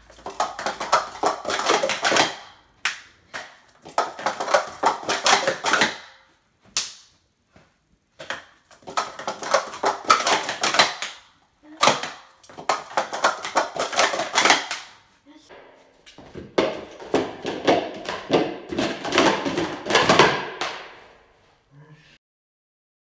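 Plastic Speed Stacks sport-stacking cups clattering rapidly as they are stacked up and down in timed runs. The clatter comes in five quick bursts with short pauses between them; most bursts last about two seconds, and the last lasts about four.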